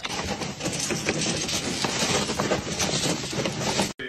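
A dog thrashing and scrabbling in a plastic paddling pool, a dense, rough, crackling noise that cuts off abruptly just before the end.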